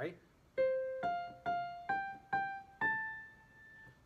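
Digital keyboard in a piano voice playing six single notes, about two a second, that step upward and end on a held note. This is the phrase 'so, do, do, re, re, mi' played as a model for singers to echo.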